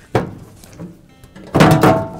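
Washer lower access panel knocking as its last screw is taken out. About a second and a half in, it clatters loudly with a ringing tone as it drops free of the front panel.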